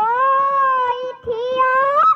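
A young girl singing a Bihu song into a microphone, holding long gliding notes with a short break about a second in, over a steady run of dhol drum strokes.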